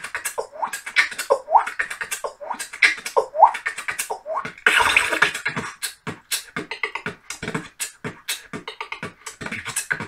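Solo human beatboxing: rhythmic mouth percussion with short rising vocal swoops over the beat in the first half, a longer noisy burst about five seconds in, then a quicker run of percussive clicks and hits.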